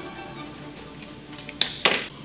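Soft background music, with two quick, sharp sniffs near the end as a glass of dark beer is held to the nose and smelled.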